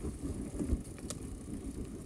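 Mountain bike riding over a bumpy dirt and leaf-litter trail: a low, uneven rumble of the tyres and bike jolting over the ground, with a sharp click about a second in.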